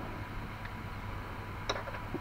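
Low steady background hiss with one faint click about two seconds in, a hard resin coaster being set against another on a cutting mat.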